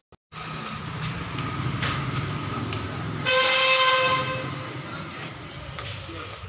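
Street traffic noise with a low steady rumble, and a vehicle horn sounding once for about a second, a little past the middle, as the loudest sound.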